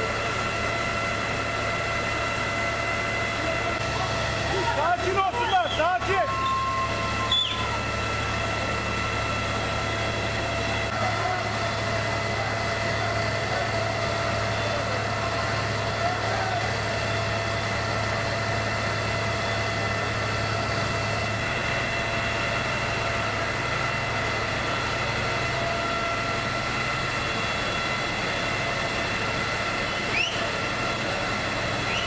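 Fire truck engine running steadily, a low hum under a high steady whine. Raised voices break in briefly about four to seven seconds in.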